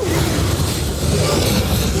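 Test Track ride vehicle rolling along its track through the dark show building: a steady low rumble under a rushing hiss.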